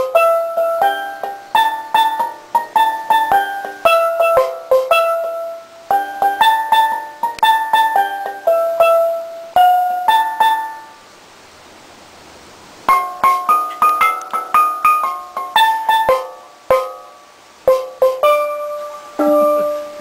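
Steelpan (steel drum) played with mallets: a quick melody of struck, ringing notes, pausing for about two seconds midway and then picking up again.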